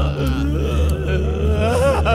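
A man groaning and sobbing in pain, his voice wavering up and down, over a low steady drone of film score.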